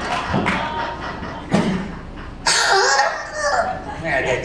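Theatre audience laughing, with a cough, and a short knock about a second and a half in.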